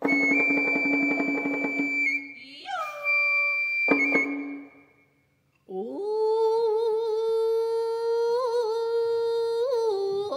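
Japanese hayashi: a bamboo fue holds a high note over a rapid roll on a large stick-beaten taiko, ending in a single drum stroke that dies away. After a moment of silence, a woman's voice scoops up into a long held sung note with wavering ornaments.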